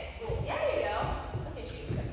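A person speaking, with a few dull low thuds underneath.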